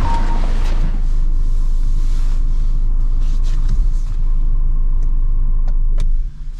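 A steady low rumble, with a few faint knocks as someone settles into the driver's seat of a car; the rumble falls away sharply at the very end.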